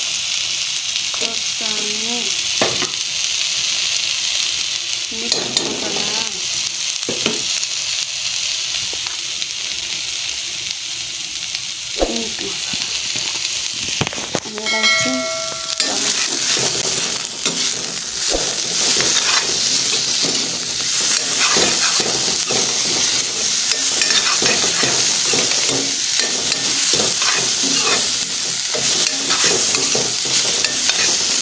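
Sliced bitter gourd frying with a steady sizzle in a metal pan. About halfway through, a metal spoon starts stirring and scraping against the pan, and the sizzling becomes louder.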